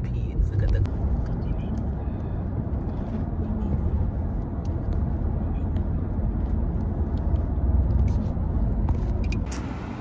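Steady low rumble of road and engine noise heard from inside a moving car's cabin, with a few light clicks. The sound changes near the end.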